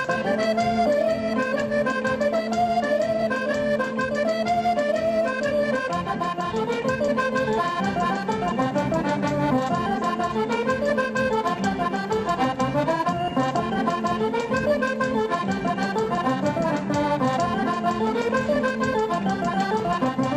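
Accordion playing a quick traditional Irish dance tune, with a low note held under the melody for about the first six seconds.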